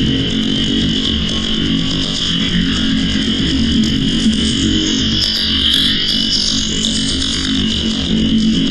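Electronic industrial noise music: a dense, steady distorted drone processed through an analog amplifier simulation plugin, with a hum low down and a bright, harsh band high up. A shriller hiss swells about five seconds in.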